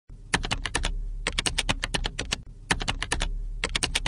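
Computer keyboard typing: rapid key clicks, about eight a second, in three runs broken by short pauses about a second in and near two and a half seconds.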